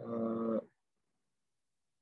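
A man's drawn-out hesitation sound, one steady held 'uhh' at an even pitch for about two-thirds of a second.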